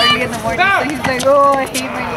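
Voices calling out, with a few short knocks in between.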